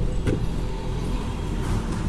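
A pause in speech filled by a steady low background rumble, with a faint short knock about a third of a second in.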